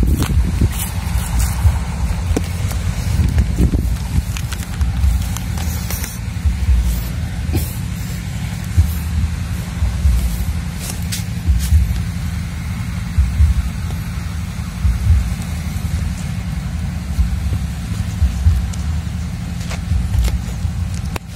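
Wind buffeting the microphone: an uneven, gusty low rumble with a steady low hum beneath it, and a few faint clicks.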